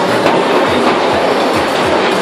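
Bumper cars rolling over the steel rink floor, a steady rattling rumble with a few low knocks as cars bump.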